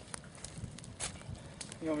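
A few faint, short clicks scattered over a quiet outdoor background, with no strike of the tool on the laptop; a man's voice begins just before the end.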